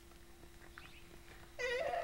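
Near quiet with a faint steady hum, then a child's high-pitched voice starting near the end.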